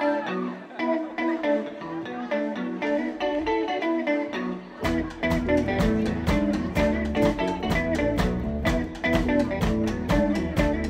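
Indie rock band playing live: an electric guitar plays a repeating melodic figure on its own, then bass guitar and drums come in together about five seconds in and the full band plays on with a steady beat.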